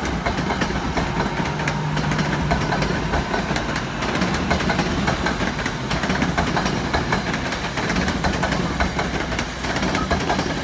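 NJ Transit commuter coaches rolling past at low speed: a steady low rumble from the train with many sharp wheel clicks on the rails.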